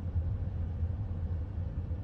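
Steady low rumble of a car heard from inside its cabin, with a faint steady hum above it.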